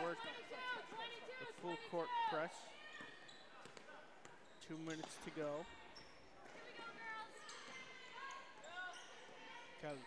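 Basketball being dribbled on a hardwood gym floor during live play, with short high-pitched squeaks in the first couple of seconds.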